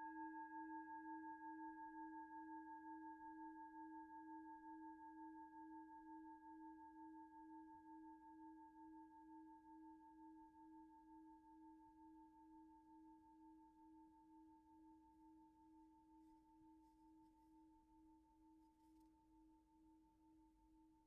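A singing bowl ringing and slowly dying away, its low tone wavering with a slow beat above fainter, higher overtones. It fades to near silence about three-quarters of the way through.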